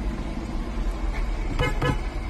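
Vehicle horn giving two short toots near the end, over the steady low rumble of traffic heard from inside a car.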